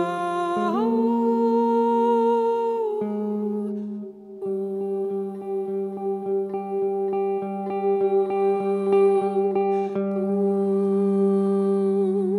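Slow live ambient music from electric guitar, voice and electronics: a steady low drone with long held notes above it, the notes shifting pitch shortly after the start. From about four seconds in, a run of soft plucked guitar notes, a few a second, sounds over the held tones.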